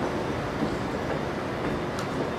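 Steady ambient rumble of a large, busy indoor atrium, a dense even noise with a faint steady hum and no distinct events.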